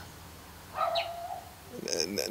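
A single short bird call, about half a second long, starting high and settling into a steady lower note, heard in a pause of speech.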